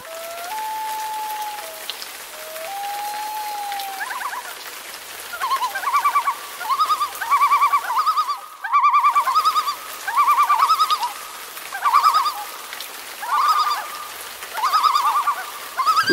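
Common loon calling: two long wailing notes, then a long series of quavering tremolo calls repeated in quick succession.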